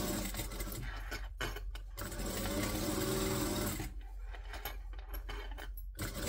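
Mitsubishi LS2-130 industrial lockstitch sewing machine stitching a seam in two bursts, each speeding up and slowing down, with a stop of about a second between them and another near the end. The motor hums steadily underneath throughout.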